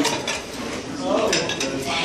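Clinks and clatter of dishes and cutlery as a few short sharp knocks, with a brief snatch of voice about a second in.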